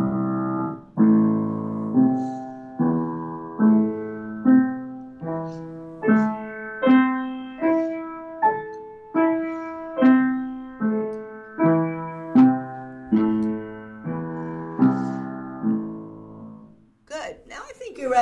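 Upright piano playing an A minor arpeggio slowly, one note at a time, a little over one note a second. The notes climb and then come back down, each struck and left to fade.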